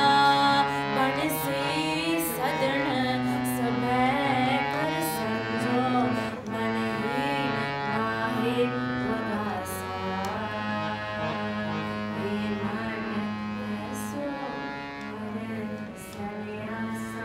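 A woman singing a Sikh kirtan shabad to her own harmonium, the reed organ's held chords sustaining under her voice as it bends through the melody. The music eases somewhat in loudness toward the end.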